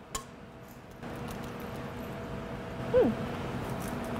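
A single sharp tap, like an egg cracked on the rim of a stainless steel pot. About a second later comes a steady swishing of cookie batter being mixed in the pot, which stops suddenly near the end.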